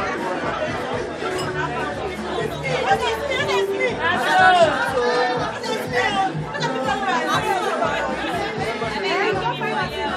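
Many guests chattering and calling out at once over background music with held notes and a steady bass line.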